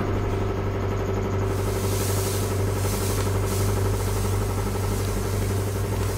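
Steady low mechanical hum of machinery running, with a few faint steady higher tones and a hiss that grows about a second and a half in.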